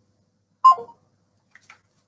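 Dead silence on a video-call line, broken about two-thirds of a second in by one short tone that falls in pitch, followed by a few faint clicks.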